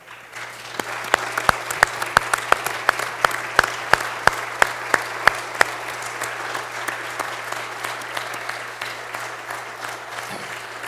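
Audience applauding in an auditorium. Over it, one person claps loudly close to the microphone, about three claps a second, for roughly the first five seconds.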